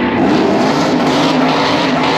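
A drag-racing vehicle's engine running loud at high revs, its pitch sliding down and then climbing again.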